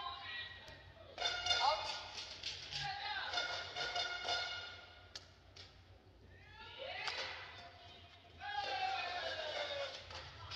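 High-pitched shouted cheers and calls from voices in a large sports hall, coming in several loud bursts, some rising and some falling in pitch. A few sharp taps of a racket hitting the shuttlecock come between them.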